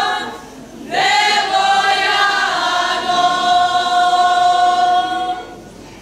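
A group of women singing a folk song unaccompanied. One phrase ends, and a new one opens about a second in with a slide up into the note. A long held note follows and fades out near the end.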